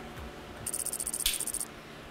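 A brief, high, fine rattle lasting about a second, from a door with glass jalousie louvers being handled.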